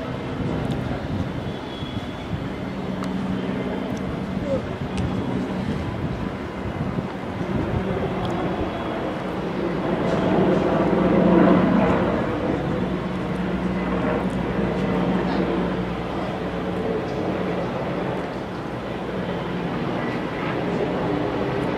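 Open-air cricket ground ambience: a steady hum with indistinct players' voices, swelling louder with shouting about ten to twelve seconds in.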